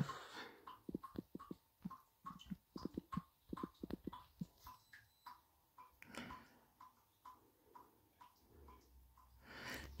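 Faint, irregular tapping of a finger typing on a smartphone's touchscreen keyboard, quick for the first four seconds or so and then sparser.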